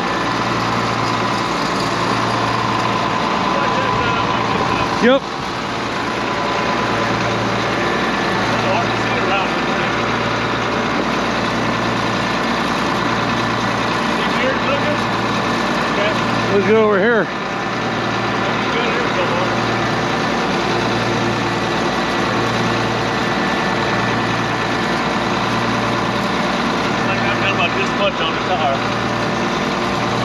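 Large diesel engine idling steadily, with a slow low throb about once a second. Two short, louder noises break in, about five and seventeen seconds in.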